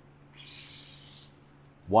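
A felt-tip marker drawn across cardboard in one stroke lasting about a second, with a faint low steady hum underneath.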